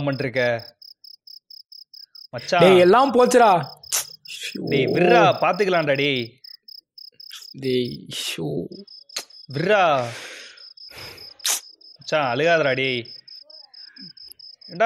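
A man crying in anguish: several drawn-out wails with sobbing breaths between them, over a cricket chirping in a steady fast pulse.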